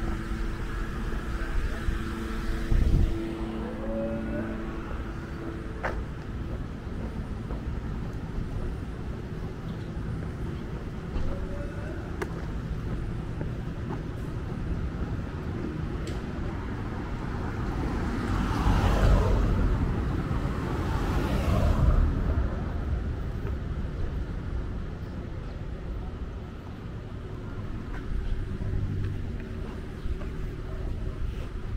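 City street ambience: a steady hum of road traffic and engines, with one vehicle swelling up and passing close by about two-thirds of the way through.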